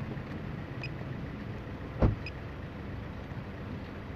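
Steady outdoor background rumble, with one sudden loud thump about two seconds in.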